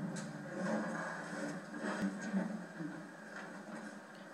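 Faint television audio with no speech: low background noise from the broadcast and a single click about halfway through.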